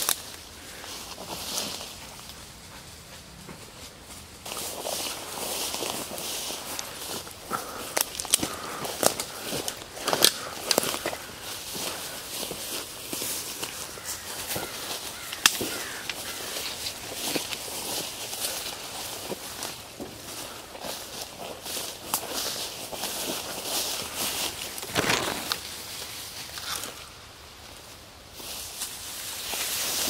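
Footsteps pushing through dense woodland undergrowth: leaves and ferns brushing, with sharp cracks of sticks snapping now and then.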